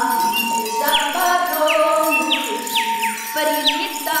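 Lively festive folk music with jingle bells, a steady held high tone and repeated quick falling whistle-like glides over lower sung or played notes.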